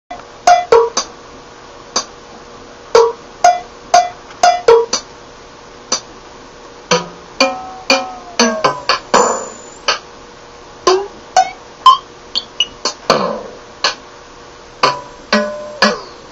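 Circuit-bent Roland DR-505 drum machine played by hand on its pads: single short drum and percussion hits at an uneven pace, some with a ringing pitch that slides downward.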